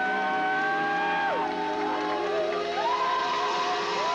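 Live rock band music with a woman singing two long held high notes, sliding up into each, over sustained chords from the band.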